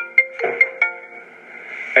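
Mobile phone ringtone: a quick melody of short, ringing notes, about five a second, that stops about a second in.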